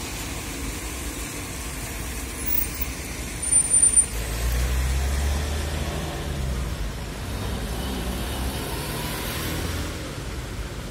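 Rain falling on a wet street while a motor vehicle drives past on the wet road. Its low rumble swells from about four seconds in and fades near the end, just after a few sharp, loud knocks.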